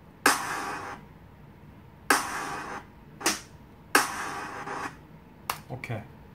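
A sound sample being auditioned in music-production software: a short noisy hit with a sharp attack and a fading tail of under a second, played four times at uneven intervals, then a few quick clicks near the end.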